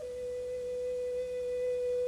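A flute holding one long, steady note, nearly a pure tone.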